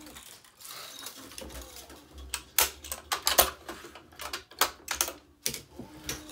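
Irregular sharp clicks and taps from hands working a tennis racquet mounted on a stringing machine: clamps, frame and strings being handled. They come mostly in the second half.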